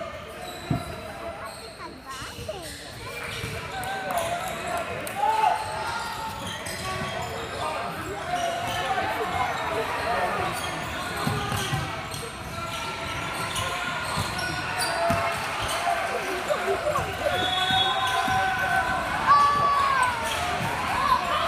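Basketball game on an indoor hardwood court: the ball bouncing and knocking on the floor, with short squeaks from players' sneakers, under spectators' and players' voices echoing in the gym.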